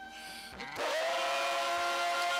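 Live worship music: a long, held note sung into a microphone over instrumental backing. It swells louder about three-quarters of a second in.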